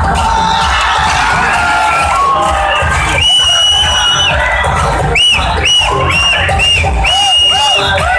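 Loud dance music with a heavy, steady beat, its high melody line holding one long note about three seconds in and then playing several short notes, over a crowd cheering.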